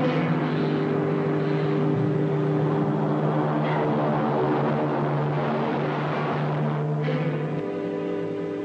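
Rocket-ship engine sound effect: a rushing roar over a low steady hum, swelling twice and cutting off sharply about a second before the end.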